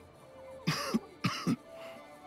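A man's two short, harsh, cough-like vocal bursts about half a second apart, falling in pitch, over background music with held tones.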